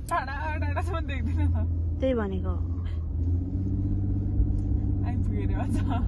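Steady low rumble of a Chevrolet's engine and tyres, heard from inside the cabin while it drives. A person's voice sounds over it at the start, around two seconds in and near the end.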